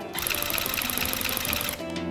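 Handheld electric tufting gun running in a rapid mechanical chatter as it punches yarn into cloth stretched on a frame. It stops suddenly about a second and a half in, and guitar music comes in near the end.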